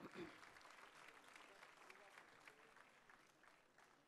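Faint audience applause, a thin crackle of many hands clapping that dies away towards the end.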